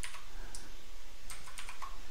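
Computer keyboard keystrokes: a handful of separate key clicks, more of them close together in the second second, as text is typed into an editor.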